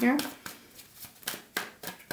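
A deck of tarot cards being shuffled overhand, with a few quick soft slaps of cards in the second half.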